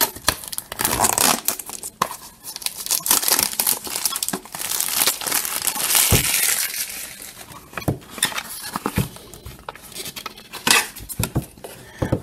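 Toy packaging being torn open by hand, with cardboard tearing and wrappers crinkling in a busy run of crackles and sharp clicks. The noise thins out to a few scattered clicks in the second half.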